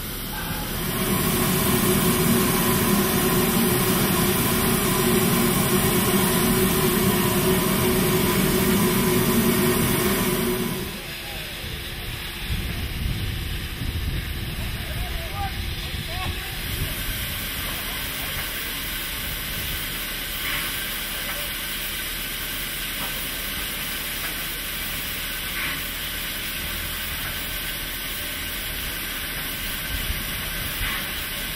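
Cab noise of a steam locomotive under way: a loud, steady running noise with a low hum. About eleven seconds in it cuts to a standing steam locomotive at a station, its steam hissing steadily at a much lower level.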